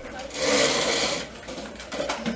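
A short burst of harsh mechanical noise lasting under a second, starting about half a second in, over a faint murmur of voices.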